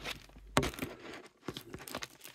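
A vinyl record being slid one-handed into its sleeve: scattered rustles, scrapes and light clicks of handling, the sharpest about half a second in.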